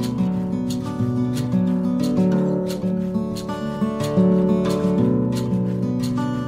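Background music: an acoustic guitar strummed in a steady rhythm, about two strums a second, with the chords changing every second or so.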